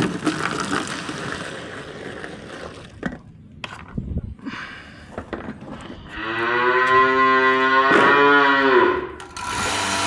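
Water pours from an electric kettle into a plastic bucket at the start. About six seconds in, a cow moos once, a long call of about three seconds and the loudest sound here. Just before the end a steady machine hum starts: the vacuum pump of a bucket milking machine running.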